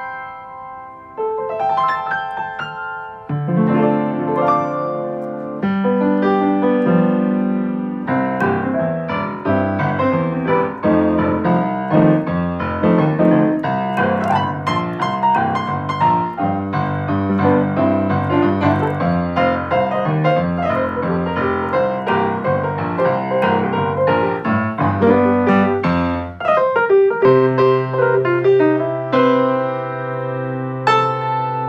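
Sherman Clay 5'7" piano played by hand, chords and melody. It starts lightly and grows fuller, with a strong bass from about eight seconds in and a short break a few seconds before the end.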